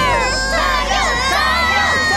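Several cartoon children's voices cheering and shouting together, one holding a long high cry in the second half, over background music.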